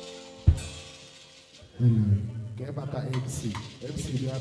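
A live band's held closing chord fading out, ended by a single sharp drum-kit hit about half a second in; then the music stops and an amplified man's voice takes over from about two seconds.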